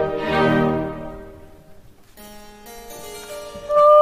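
Opera orchestra strings hold a chord that fades out. A harpsichord then plays two chords of recitative accompaniment, and near the end a singer starts a held note.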